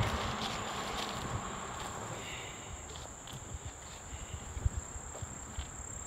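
Steady high-pitched drone of insects such as crickets in summer vegetation, over a low rumble of distant road traffic, with light rustling and a few soft knocks of someone walking through brush.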